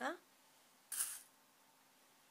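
A brief, hissy rustle of fabric about a second in, as the piped bodice edge is turned over in the hands, then quiet room tone.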